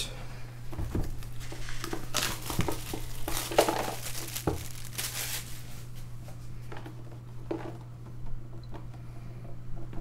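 A sealed cardboard trading-card box being picked up, set down and turned over in the hands, with irregular crinkling and light knocks, busiest in the first half. A steady low hum runs underneath.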